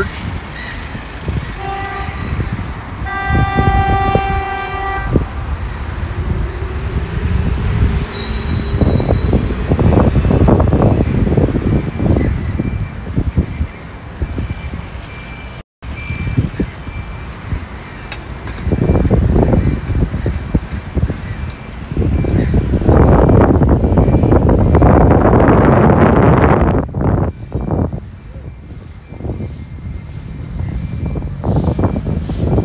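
A vehicle horn sounds on a busy city street: a short toot, then a longer held blast of about two seconds. Road traffic runs throughout, with a brief dropout in the audio about halfway through and a louder passing rush near the end.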